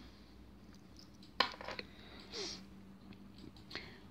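Quiet handling noise from fingers working a sewing needle and thread: a sharp click about a second and a half in, then a few soft scratchy brushing sounds, over a faint steady hum.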